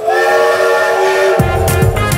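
Steam locomotive whistle blowing one loud chord for about a second and a half, then music with a heavy low beat comes in.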